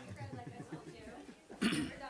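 Faint, indistinct talk, then a single short cough near the end.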